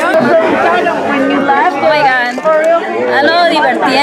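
Overlapping speech: several women talking at once.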